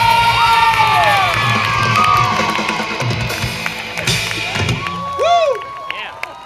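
Live rock band with drum kit and electric guitars playing the last bars of a fast punk song over a cheering, screaming crowd. The band stops about five seconds in, leaving the crowd's screams and cheers.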